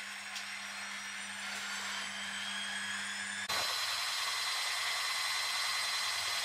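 Room tone in a small cabin: a steady low electrical hum under a faint hiss. About halfway through, the hum cuts off suddenly and a louder hiss with faint high steady whines takes its place, as at an edit.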